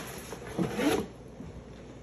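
Handling noise of a cardboard shipping box and packing paper, rustling and scraping as a hand rummages inside and pulls out a small metal concho cutter. The loudest scrape comes about half a second to a second in.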